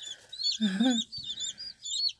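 A brood of five- or six-day-old chicks peeping steadily, many short high chirps overlapping. A person's voice sounds briefly about half a second in.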